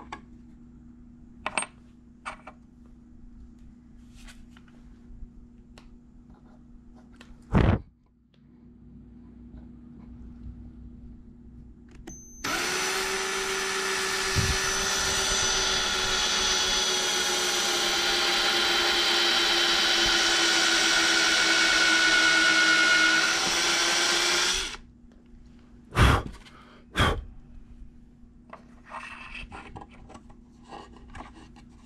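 A power drill runs steadily for about twelve seconds, driving screws to fasten the oak top down through small metal corner brackets. A few sharp knocks come before and after it.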